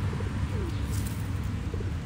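A pigeon cooing faintly over a steady low background rumble, with a brief crinkle of the plastic walnut bag about halfway.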